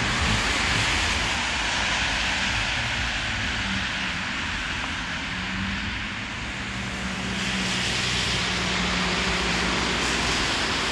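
Cars driving past on a snowy street: tyre hiss swells as one passes at the start and again as another approaches near the end, with a steady low engine hum through the second half.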